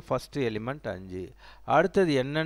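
A man's voice speaking, with a short pause about two thirds of the way through.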